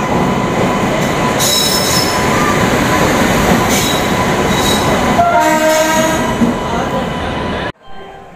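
An Indian Railways electric-hauled passenger train runs past close to the platform: a loud, steady rumble of wheels on rails with brief high wheel squeals. A pitched tone sounds for about a second near the end, then the sound cuts off abruptly.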